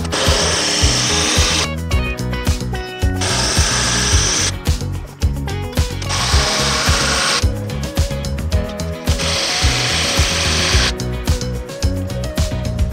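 Power drill running in four separate runs of a second or two each, with a faint whine, over background music with a steady beat.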